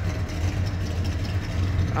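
A steady low machine hum with an even background noise, no clear changes in pitch or level.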